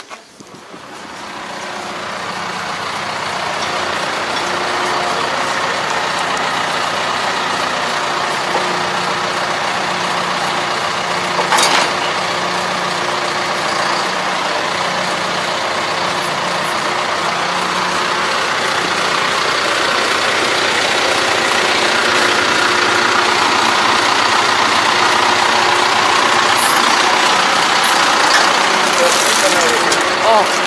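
Tractor diesel engine idling steadily, growing slightly louder toward the end, with one sharp knock about eleven seconds in.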